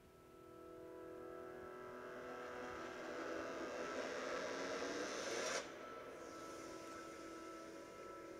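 Opening soundtrack of a promo film: a held synthesizer drone chord that swells, with a rising whoosh building over it and cutting off suddenly about five and a half seconds in, leaving a quieter sustained tone.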